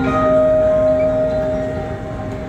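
Live rock band playing the slow intro of a song: a few clear, sustained notes ring out and slowly fade.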